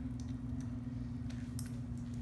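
Steady low background hum in a small room, with a couple of faint light clicks near the end.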